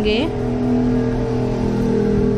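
A steady drone of two or three held low tones, unchanging throughout, with the tail of a woman's spoken word at the very start.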